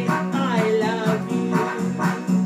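A pop song played and sung: a woman's voice holding a wavering note over electronic keyboard accompaniment with a steady repeating bass pattern.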